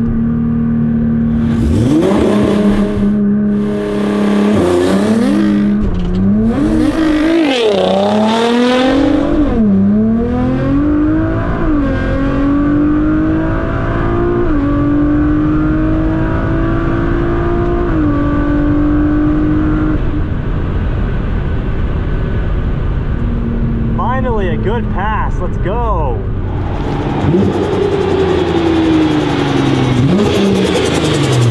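Nissan R35 GT-R's twin-turbo V6 heard from inside the cabin on a full drag-strip pass. The engine holds a steady note for a few seconds, then climbs in pitch and drops back with each quick upshift through the gears for about twenty seconds before settling lower. Near the end an engine note falls steadily in pitch.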